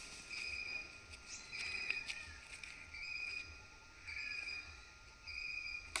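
A high, even chirping call from an animal, each call about half a second long, repeated steadily about once a second, with a faint low background hum.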